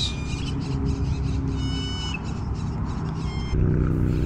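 Outdoor ambience: a steady low rumble with a few short, high bird calls about one and a half seconds in and again near the end. A low vehicle engine hum comes in near the end.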